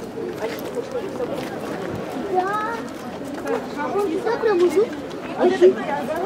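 Several people talking over one another, a babble of overlapping voices with no single clear speaker.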